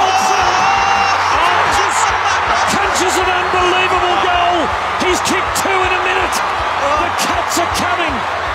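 Football stadium crowd cheering and shouting after a goal, a dense roar of many voices with scattered sharp claps.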